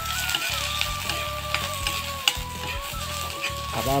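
Chopped vegetables sizzling and frying in a wok over a wood fire, with a metal ladle stirring and scraping against the pan in short clicks.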